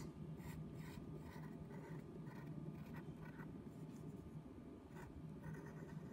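Pencil scratching faintly on paper in short, irregular strokes while a line is drawn, over a low steady hum.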